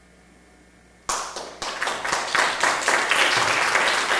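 Audience applause at the end of a song. After about a second of near quiet, a few separate claps break out and quickly thicken into steady, full applause.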